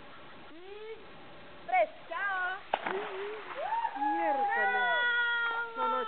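A baby's high-pitched, drawn-out cries after his first dive underwater, the longest held near the end. A sharp splash of water comes about three seconds in.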